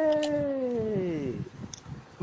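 A single drawn-out voiced cry, about a second and a half long, rising briefly in pitch and then sliding slowly down before fading.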